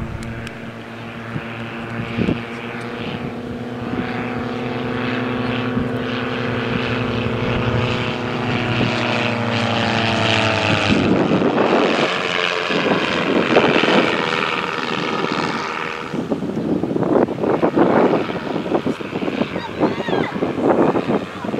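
Two Silence Twister aerobatic planes' propeller engines droning overhead in formation, their pitch dropping about ten seconds in as they pass. After that the sound turns rougher and noisier.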